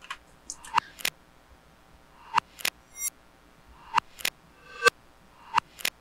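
Reversed percussion samples playing on their own: weird little clicks, mostly in pairs about every one and a half seconds, several of them preceded by a short rising reversed swell that sucks into the click.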